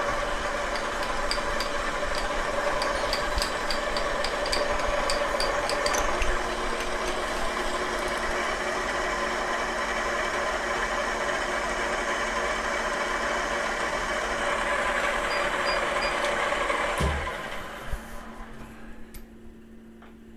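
FP1-type milling machine spindle running steadily with an edge finder in it, with light regular ticking in the first few seconds as the table handwheel is turned. Near the end the spindle is switched off and runs down.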